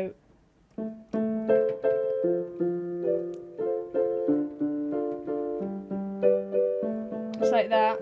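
Yamaha electronic keyboard on its grand piano voice, played with both hands: repeated chords in a steady rhythm, starting about a second in.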